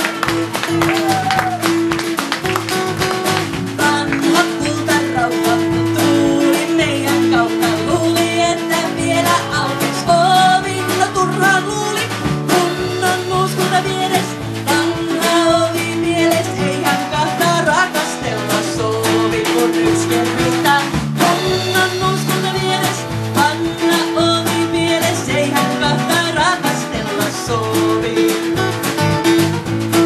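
A live band playing a Finnish traditional song: acoustic guitar, bass and drums keep a steady groove under a wavering lead melody line.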